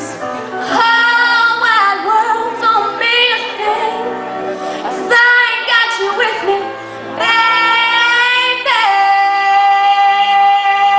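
A young female singer performing a slow soul ballad solo over accompaniment, in several sung phrases. About nine seconds in she holds one long, steady high note.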